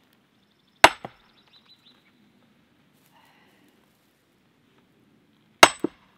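Two blows of a heavy splitting maul on a steel splitting wedge driven into a log round, nearly five seconds apart. Each gives a sharp metal-on-metal clank with a brief high ring, and the second is followed a moment later by a smaller knock.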